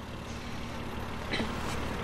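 Steady low rumble of a car, heard from inside the cabin, with one soft click about one and a half seconds in.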